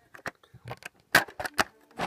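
Hard plastic Lego bricks clicking and knocking together as they are handled and pressed into place by hand: a rapid, uneven string of sharp clicks.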